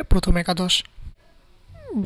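A voice speaking Bengali, breaking off for a short pause, then a brief falling vocal glide just before the speech picks up again.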